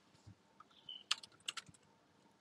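A few faint computer keyboard keystrokes in quick succession, starting about halfway through.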